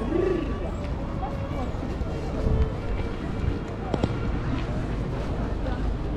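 Busy outdoor street ambience: indistinct chatter of passers-by over a steady low rumble.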